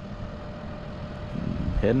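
Volvo crawler excavator's diesel engine running steadily.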